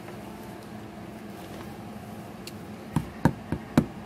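Four quick sharp knocks, a plastic doll tapped against a hard floor as it is walked in. Before them, for about three seconds, there is only a faint steady room hum.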